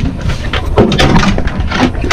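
A run of knocks and clunks on an aluminium boat over a loud, low rumble.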